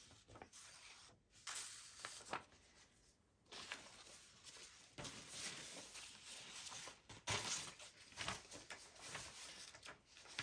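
Faint, irregular rustling and sliding of printed paper sheets as they are handled and leafed through.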